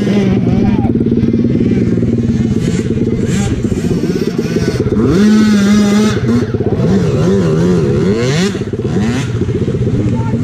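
Small four-stroke peewee dirt bike engine running hard, its revs rising and falling again and again as the bike is ridden.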